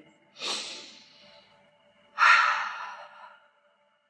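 A woman breathing deeply: two long audible breaths, the first about half a second in and the second at about two seconds, each starting sharply and fading out. Faint steady music tones sit underneath.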